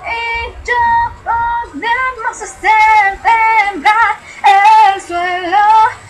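A female voice singing a pop melody over a backing track, moving between notes and holding several of them.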